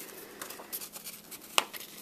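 Cardstock card and satin ribbon being handled: faint papery rustling with small ticks, and one sharp click about one and a half seconds in.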